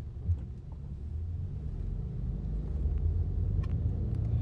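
Low, steady rumble of a car heard from inside the cabin, growing slightly louder, with a brief thump about a third of a second in.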